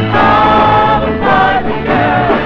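Upbeat 1970s pop song: a group of young singers sing together in held notes, backed by a band with a bass line.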